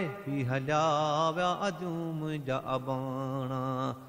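Men's voices chanting a Sindhi devotional qasida: a low, steady held hum with a wavering melodic line above it.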